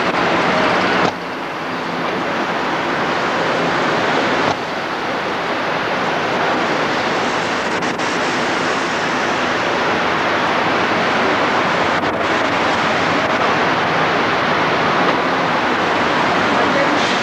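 Steady rushing noise inside a car's cabin. It drops suddenly about a second in and again about four and a half seconds in, then builds back up.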